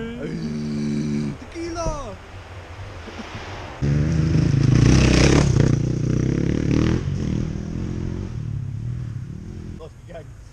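Enduro dirt bike passing close on a forest race track: its engine comes in suddenly about four seconds in, is loudest a second later, drops in pitch near seven seconds and then fades.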